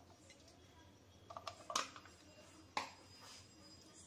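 Cooking oil being poured into a heavy old iron kadhai: mostly quiet room tone with a few short clicks and taps, the two loudest about a second apart near the middle.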